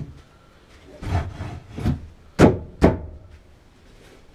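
Four irregular wooden knocks on a timber bed frame, the last two the sharpest and loudest, about half a second apart, near the middle of the stretch.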